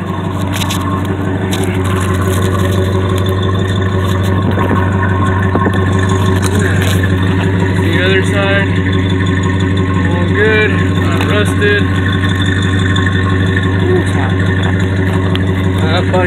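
Car engine, the 1969 Buick Electra's V8, idling steadily with an even hum. Faint voices are heard now and then.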